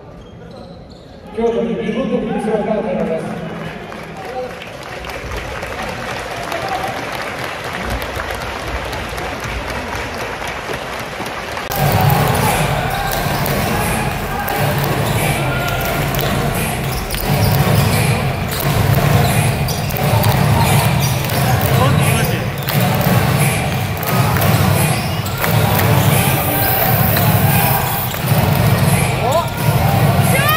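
Crowd noise and voices in an indoor basketball arena, starting suddenly about a second and a half in. From about twelve seconds in it grows louder, with a rhythmic cheer repeating about once a second.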